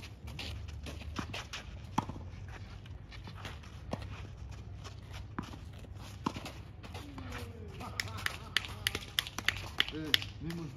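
Tennis balls struck by rackets and bouncing on the court: single sharp pops about two seconds apart, then a quicker run of clicks near the end.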